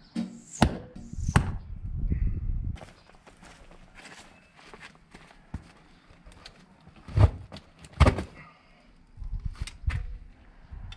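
Sharp knocks and thuds with scraping and rustling at a cardboard arrow target backed by a goat ribcage, as arrows stuck in it are handled and worked loose. Two loud knocks come near the start, two more about seven and eight seconds in, and a clatter of smaller knocks near the end.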